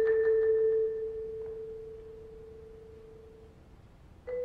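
A single vibraphone note ringing on after a few light mallet strokes, one clear tone fading slowly away over about three seconds.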